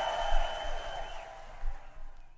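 The end of a live synth-rock concert recording dying away: crowd noise under a long, held high whistle-like tone, fading down.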